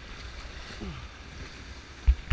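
Rushing whitewater of a river rapid around an inflatable raft, a steady noise with wind gusting on the microphone underneath.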